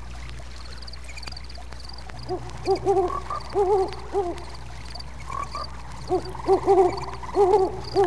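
Owls hooting in two runs of arched hoots, one a little past two seconds in and another about six seconds in, over a steady chorus of frogs.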